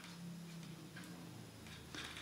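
Faint, light ticks of metal knitting needles touching as stitches are worked by hand, a few ticks about half a second apart.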